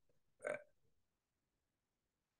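Near silence, broken once about half a second in by a brief throat sound from the presenter between sentences.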